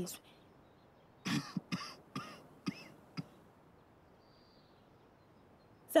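A woman's short, breathy vocal sounds, halting and broken, for about two seconds, then quiet outdoor background.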